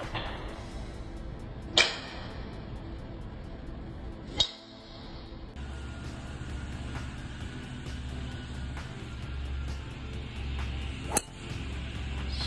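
Golf driver striking a ball off a tee, three sharp single cracks: about two seconds in, about four and a half seconds in, and near the end.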